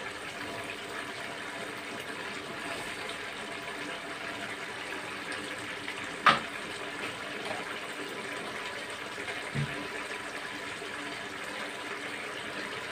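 Jackfruit and pork simmering in coconut milk in a wide metal pan: a steady bubbling hiss as the sauce reduces. A single sharp click about halfway through and a soft low knock a few seconds later.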